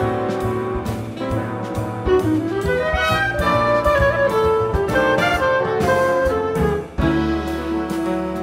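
Electric clarinet playing a fast, winding jazz solo line over bass and drums. About seven seconds in, the sound drops out briefly and a held low chord follows.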